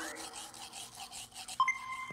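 Toothbrush scrubbing teeth in soft, fluctuating brushing strokes. Near the end a clear high tone starts suddenly and holds.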